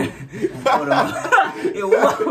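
Two men laughing together, voiced chuckles with a short dip near the start.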